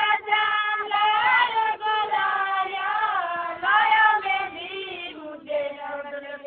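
A high female voice singing a Sindhi-Kutchi folk song (lok geet), with long drawn-out phrases that bend up and down in pitch and brief pauses for breath.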